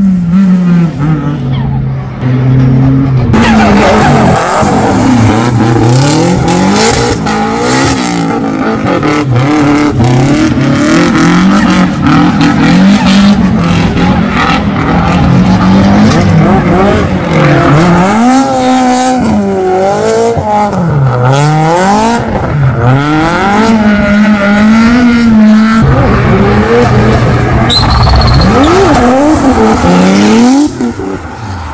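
Drift cars' engines revving hard, the pitch climbing and dropping again every second or two as the cars slide sideways through the corners. A short high tyre squeal comes near the end.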